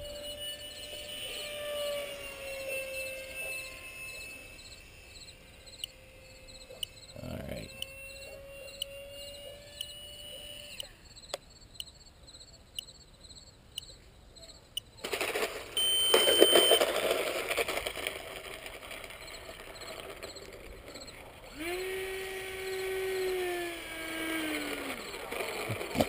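Electric ducted-fan motor of a 64mm foam F-18 RC jet whining in flight, its pitch gliding slightly up and down, then fading out after about eleven seconds. A loud rushing noise follows for several seconds. Near the end a steady hum comes in, drops in pitch and stops.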